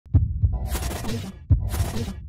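Intro sound design: deep bass thuds, three in all, alternating with two bursts of hissing electronic noise, with glitch-style effects.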